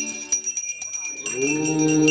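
Temple hand bells ringing rapidly and continuously; about one and a half seconds in, a conch shell (shankh) is blown, its note sliding up and then holding steady.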